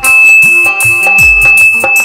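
Instrumental ghazal accompaniment on harmonium and dholak, between sung lines. A steady high-pitched tone starts suddenly at the beginning and is held almost to the end over the music.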